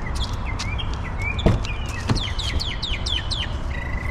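Small birds chirping, with a quick run of falling notes in the middle, over a steady low background rumble. Two dull knocks, about a second and a half and two seconds in.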